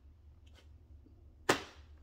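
Quiet room tone with a steady low hum, broken about one and a half seconds in by a single sharp click that dies away quickly.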